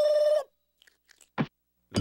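Cartoon soundtrack sound effects: a steady held tone that cuts off about half a second in, then a few faint ticks and a single short knock about a second and a half in.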